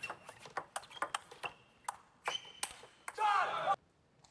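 Celluloid/plastic table tennis ball knocking back and forth off rubber bats and the table in a rally, a quick run of sharp ticks, some with a short ringing ping. Near the end a loud burst of shouting breaks out and cuts off suddenly.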